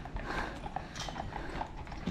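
Horse hooves clip-clopping on a paved road, a few scattered strikes.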